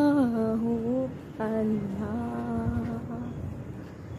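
A single voice slowly chanting "Allah" in long, drawn-out sung notes, a devotional zikr. One note falls and ends about a second in, and the next is held for about two seconds before fading.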